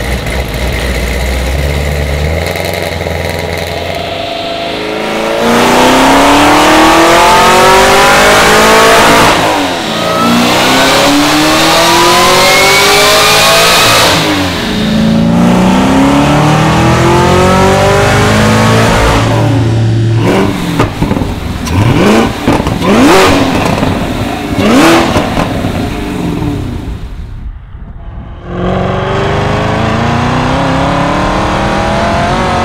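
Supercharged 416 cubic-inch stroker V8 of a 1200 hp Camaro ZL1 1LE, idling at first, then revved up in several long rising pulls a few seconds each, with a high whine rising alongside. After about 20 seconds come short, sharp revs, and near the end it accelerates again.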